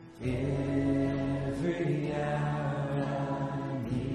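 Live church worship music: a male singer holds long, slow notes over acoustic guitar and band. It comes in just after a brief lull at the start.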